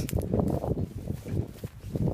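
Footsteps on a gravel path, a quick irregular run of scuffs and crunches, with rustling from the phone being carried.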